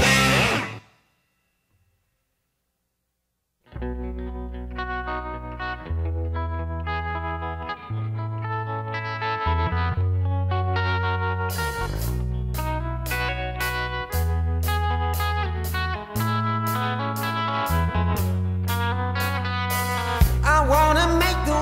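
Hard rock recording: the previous song ends in the first second, a few seconds of silence follow, then the next song opens with a distorted electric guitar riff, with drums joining in about halfway through.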